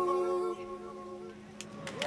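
Layered a cappella humming from one live-looped voice: a held chord of several notes that drops off about half a second in and fades away to a faint tail.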